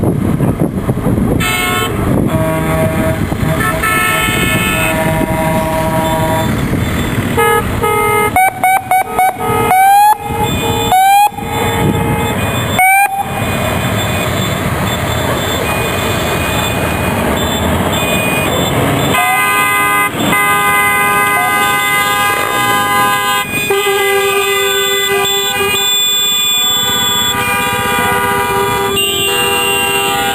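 A convoy of trucks and motorcycles passes, with engine and road noise under repeated vehicle horns. About 8 seconds in there is a run of short blasts, each rising in pitch as it starts. From about 19 seconds on a horn sounds a long chord of several tones.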